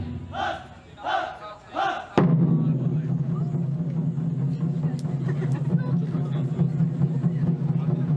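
Festival music drops out while a group gives three short rhythmic shouts. The music comes back abruptly with a sharp stroke about two seconds in and runs steadily over crowd noise.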